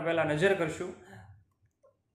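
A man's voice speaking for about the first second, trailing off, then near silence.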